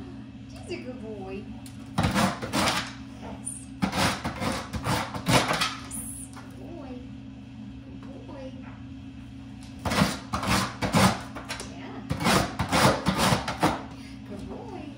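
Rasping scrapes on the sandpaper pad of a dog nail scratch board, in four short bunches of quick strokes, over a steady low hum.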